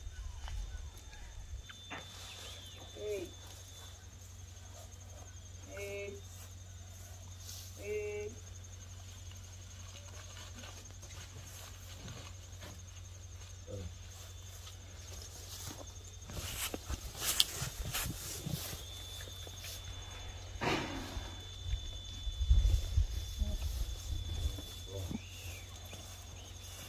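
Rustling and knocking of sacks of salt being handled and settled onto a horse's saddle, loudest in bursts about two-thirds of the way in, over a steady high insect drone.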